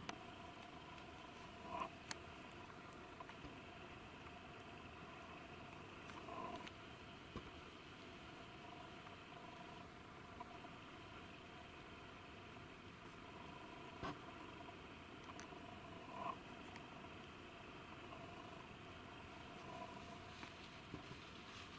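Near silence: a faint steady hiss of background ambience with a few soft clicks and small swells.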